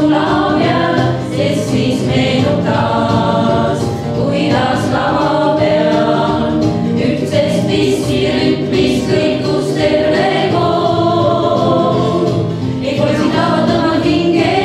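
A women's vocal ensemble of six singing together, held phrases without a break.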